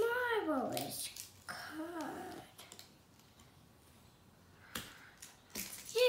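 A young child's wordless vocal sounds: two short pitched hums that rise and fall in the first two seconds. Then a quiet stretch, with a couple of sharp clicks near the end as the toy's cardboard packaging is handled.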